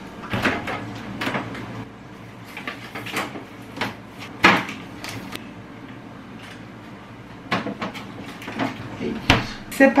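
Refrigerator door opened and plastic-bagged trays of meat set on its shelves: a series of separate knocks, clicks and plastic rustles, ending with a heavy thump about nine seconds in as the door is shut.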